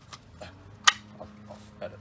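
Loose metal parts of a new loaded brake caliper clicking as it is handled in gloved hands: a few light clicks and one sharp click just under a second in.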